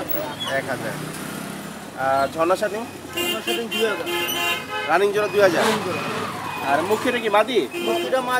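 Busy market voices talking in the background, with a horn sounding in a steady tone for about a second and a half near the middle.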